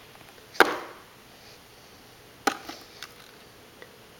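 A hand taps a plastic feeding tray: one sharp tap about half a second in and a second about two seconds later, then a couple of fainter clicks.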